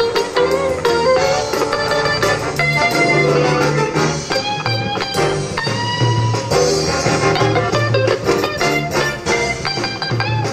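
Big band playing jazz live, with an electric guitar featured out front over the rhythm section and a steady bass line.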